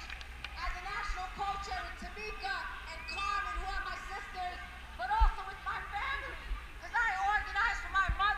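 A distant amplified voice from loudspeakers, echoing over a large outdoor crowd, with a low steady rumble of wind on the microphone and a low bump about five seconds in.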